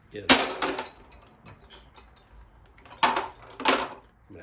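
Metal sockets clattering against a plastic Ernst socket rail as they are twisted onto and popped off its locking clips: one sharp clatter about a third of a second in, then two more close together near the end.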